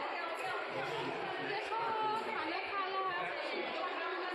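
Background chatter: several people talking at once in a large indoor hall, their voices overlapping.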